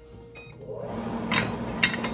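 Butter starting to sizzle in a hot frying pan on a gas burner, the sizzle coming up about half a second in and holding steady, with two sharp knocks of a utensil against the pan near the end.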